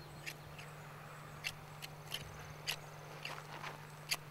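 Christmas-tree shearing knife chopping through the new growth of a conifer, a run of short, sharp, irregular cuts about every third to half second.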